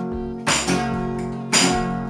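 Acoustic guitar strumming chords, with a fresh strum about once a second and the chord ringing on between strums: the opening of a song.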